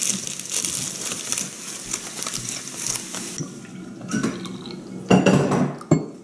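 A thin plastic shortbread wrapper crinkling as it is handled for about the first three seconds. After that come a few separate knocks and clinks of a ceramic teapot being handled near the end.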